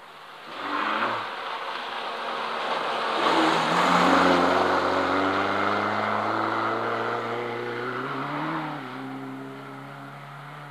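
Rally car going past at speed on a gravel stage: the engine note builds as it approaches, is loudest about four seconds in, rises and falls in pitch as the driver works the throttle, then fades as the car pulls away.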